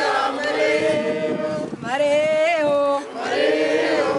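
A group of Oromo celebrants singing together, held sung notes that waver in pitch, with brief breaks between phrases about two seconds in and again near three seconds.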